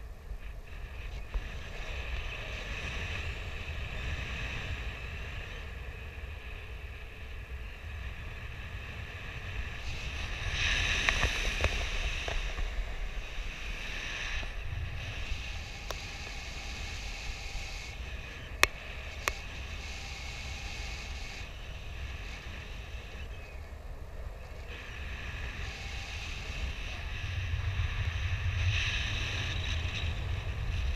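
Wind rushing over an action camera's microphone in paragliding flight, a steady low rumble and hiss that swells louder twice, about a third of the way in and near the end. Two sharp clicks come a little past halfway.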